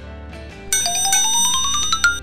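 Background music, with a loud sound effect laid over it from just under a second in: a quick rising run of chiming notes with a sparkly shimmer, ending in a bright ping. It is the cartoon 'idea' cue that goes with a lightbulb graphic.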